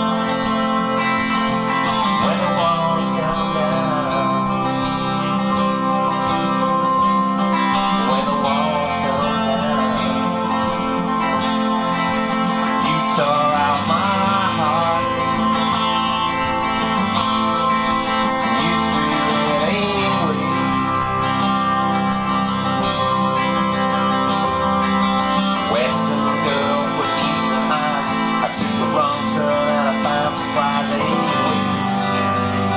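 Electric guitar played over a full-band backing track with strummed guitar, the lead line's notes bending up and down between sung lines.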